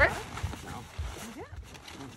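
A few dull low thuds as she shifts her feet on the wooden dock, pulling a life jacket up between her legs, then a short rising vocal sound about a second and a half in.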